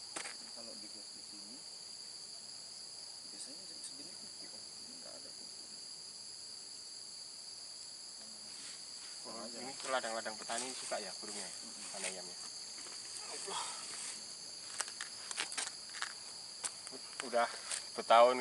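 Steady high-pitched insect chorus droning without a break, with faint low voices about halfway through and again near the end.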